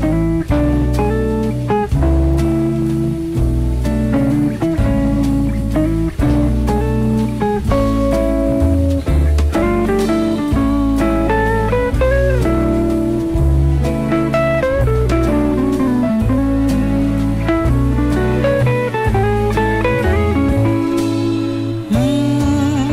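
Instrumental break of a live pop ballad with no vocals: a band playing, with a guitar prominent and a melody line moving over steady chords.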